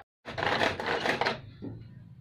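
Hand-powered mini food chopper rattling as its spinning blades chop ginger, garlic and onion, a dense run of rapid clicks for about a second that then drops away.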